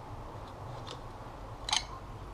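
Quiet metal-parts handling over a low room hum: a faint click about a second in, then a short, sharper metallic click near the end as the FSA Afterburner crank arm with its direct-mount chainring comes free of the spindle, its self-extracting bolt having been backed out with an Allen key.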